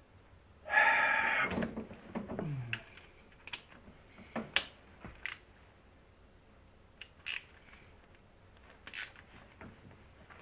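Scattered sharp metallic clicks of a small socket and ratchet being fitted to and turned on the 8 mm bolts of the engine's top cover. A louder, longer sound comes about a second in.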